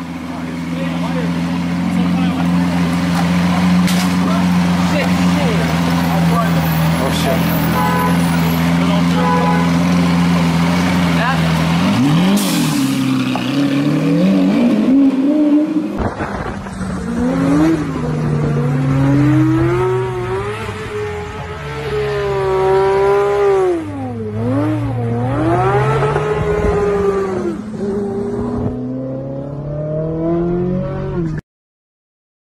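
A car engine runs with a steady low idle, then revs up and down shortly before an abrupt change of scene. A sports car engine then pulls hard, its pitch climbing and dropping again and again as it accelerates and shifts gears.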